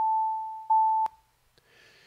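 Synthesized sine-wave tone from a p5.js clock's seconds oscillator, set to 880 Hz. It is struck afresh about once a second and fades between strikes, then stops abruptly with a click about a second in.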